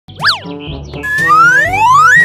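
Cartoon sound effects over light children's background music: a quick boing near the start, then a long rising whistle-like glide in the second half, the loudest sound.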